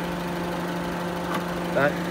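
Honda Civic's four-cylinder i-VTEC petrol engine idling with an even, steady hum, heard from beside the open engine bay.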